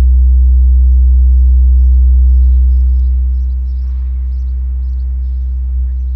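A loudspeaker driven by a frequency generator plays a steady, very loud 63 Hz low tone with overtones. About three seconds in, the tone drops noticeably in level: a few steps from a spot where sound reflected off the surroundings builds up, the waves partly cancel.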